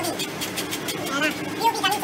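People talking, over a motor engine running steadily in the background.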